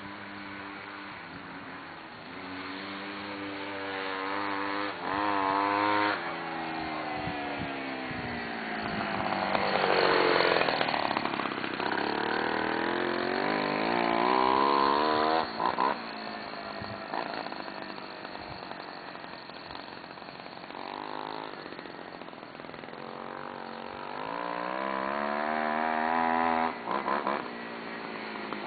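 Homelite ST-155 25cc two-stroke weedeater engine with a drilled-out muffler, driving a homemade spindle-drive bike, revving up and down as the bike rides past and back. Its pitch climbs and sinks several times, and it drops off suddenly three times as the throttle is let go.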